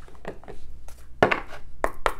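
Playing-card-sized tarot and oracle decks and a cardboard card box handled on a tabletop: a few short taps and clicks, the loudest a little past halfway.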